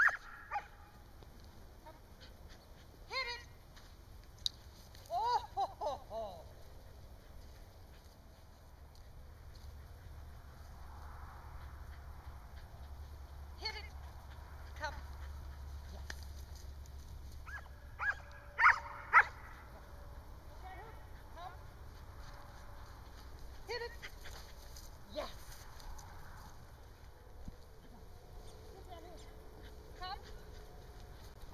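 Australian Shepherd barking and yipping in short, scattered calls during an agility run, the loudest two just before the middle of the stretch.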